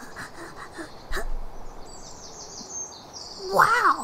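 Forest ambience: a steady soft hiss with a run of high bird chirps in the middle. A single click comes about a second in.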